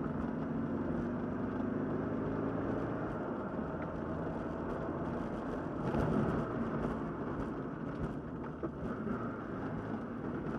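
Triumph TR7 engine pulling steadily in gear, heard from inside the cabin, its note rising gently over the first few seconds, with road and tyre rumble underneath. About six seconds in there is a short louder patch of knocks.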